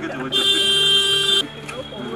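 A loud, steady buzzer-like tone that starts about a third of a second in, holds for about a second and cuts off suddenly, leaving a faint high whine.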